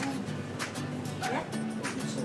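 Acoustic guitar strummed in steady repeated chords, with a short voice-like cry about a second in.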